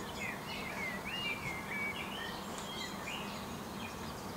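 A bird singing a quick warbling phrase of rising and falling notes for about three seconds, over steady outdoor background noise.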